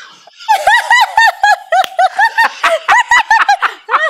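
High-pitched giggling laughter: a long, rapid run of short pulses, about four to five a second, starting about half a second in.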